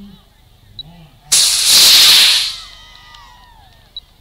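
A model rocket motor firing: a sudden loud rushing hiss starts about a second in, holds for about a second, then fades away.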